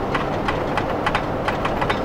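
Ford F-150 Triton V8 truck shuddering at about 45 mph, heard inside the cab as a rapid, even pulsing over the drivetrain and road noise. The owner traces this shudder to failing coil-on-plug ignition coils and spark plugs, which keep the transmission from locking into overdrive, rather than to the torque converter.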